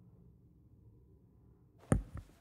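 Hushed room tone from a large chamber, then near the end a single sudden sharp knock close to the lectern microphone, as of something set down or bumped on the lectern.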